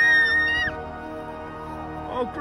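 A young girl's high-pitched scream, held briefly and ending less than a second in, over steady background music that then carries on alone.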